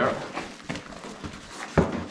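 Padded fabric golf-trolley travel bag being handled, its flaps lifted and folded over, with fabric rustling and one sharp knock near the end.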